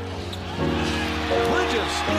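A basketball bouncing on a hardwood court, with sustained music chords playing under it.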